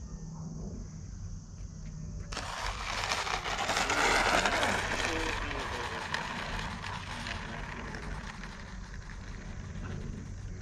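Twin ducted fans of an E-flite A-10 Thunderbolt II 64mm EDF model jet making a low pass over the runway. The fan whoosh comes in suddenly about two seconds in, swells to its loudest around the middle and fades slowly as the jet goes by.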